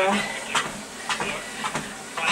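Fitnord treadmill at walking pace (5 km/h): footfalls on the belt about every half second over a steady motor and belt hum.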